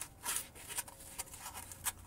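Faint scraping and rustling of a thin piece of cardboard being pushed into the gap between the lower control arm and the brake rotor, with scattered light clicks.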